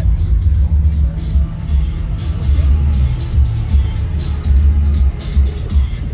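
Bass-heavy music from a car audio system's subwoofers: deep bass notes coming in long pulses, with little above them.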